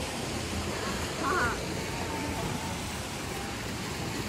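Outdoor pool ambience: a steady hiss with the distant voices of people swimming, and one brief high-pitched voice call about a second in.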